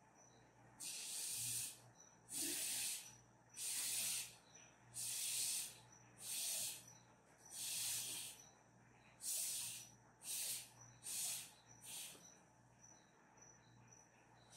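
Repeated puffs of breath blown through a plastic drinking straw to push drops of wet paint across paper: about ten short hissing blows, one every second or so, growing shorter and fainter near the end.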